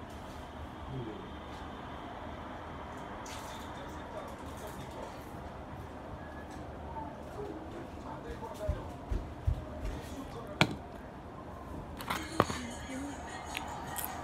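Faint distant voices over steady room noise, with a run of sharp knocks and clicks in the second half, the loudest two near the end, as things are handled and set down close to the microphone.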